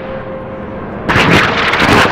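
Gunfire, a rapid run of shots that gets louder from about a second in, over a held tone.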